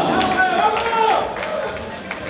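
A voice calling out loudly over crowd noise in a large room, breaking off after about a second and a quarter.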